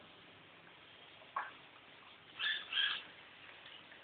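A hamster squeaking while being bathed: a short rising squeak, then two more high squeaks about a second later.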